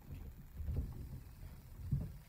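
Guinea pig moving through shredded-paper bedding in a plastic-based cage, making soft, irregular bumps and rustles, with a slightly louder bump near the end.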